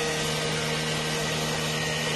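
Angle grinder cutting through a metal door, running at a steady whine without a break.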